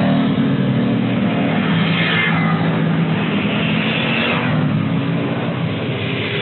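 Road traffic passing close by: motorcycle and car engines running as the vehicles go past, with a steady engine drone and the sound rising and falling as each one passes.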